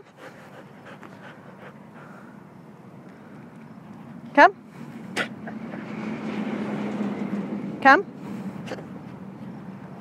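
A vehicle passing on a nearby road: a rush of noise with a low hum that swells over a few seconds and fades away, between two called commands of "come".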